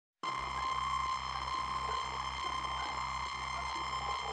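Synthesized electronic drone of steady high pure tones over a soft low pulse beating a little over twice a second. It starts abruptly out of silence just after the beginning.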